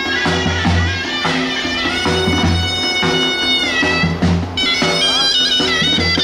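Folk music: a shrill wind instrument plays long held, wavering notes over a regular low drum beat.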